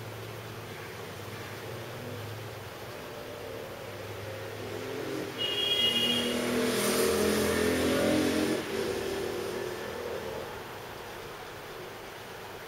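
A motor vehicle passes by about halfway through: its engine sound swells and fades over about three seconds, with a brief high tone as it arrives. Under it is a low, steady room hum.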